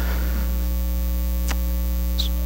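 Steady electrical mains hum with evenly spaced overtones, carried through the sound system, with one faint click about a second and a half in.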